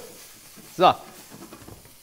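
Faint, steady sizzle of diced bacon and bread cubes frying in oil and butter in a stainless steel pan.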